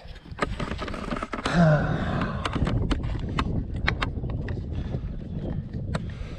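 Rustling and knocking of a body-worn camera as it is jostled, over a low steady rumble, with scattered sharp clicks. There is a short vocal sound about one and a half seconds in.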